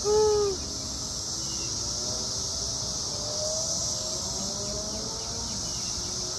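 Steady, high-pitched drone of a cicada chorus in the trees. A short, loud hoot-like call sounds at the very start.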